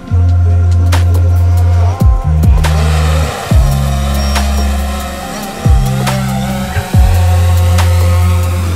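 Background electronic music: deep held bass notes and kick-drum hits that drop in pitch, every second or two, under a synth melody.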